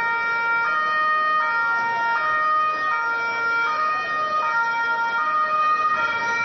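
Italian police vehicle's two-tone siren, loud, switching between a high and a low note about every three-quarters of a second.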